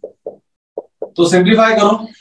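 A man speaking Urdu for the second half, preceded by four short, soft pops spread over the first second.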